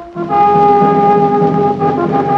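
Brass-led music: after a short note at the very start and a brief gap, a loud sustained brass chord comes in about a quarter second in and holds.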